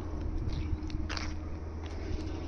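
A few soft crunching footsteps on gravel over a low steady background rumble.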